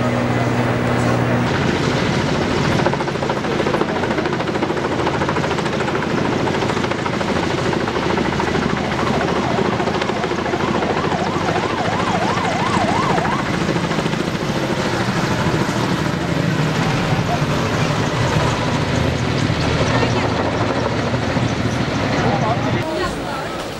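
Firefighting helicopter flying overhead, its rotor and engine running steadily under crowd voices. A short, rapid warbling tone sounds a little past the middle.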